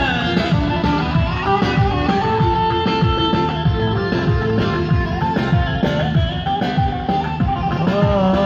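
Live instrumental break of a Turkish folk-pop song: plucked bağlama and acoustic guitar with keyboard playing a steady melody between sung lines, with no voice.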